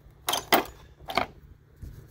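Metal hand tools clinking against each other in a plastic tub: a few sharp clinks in the first second and a half.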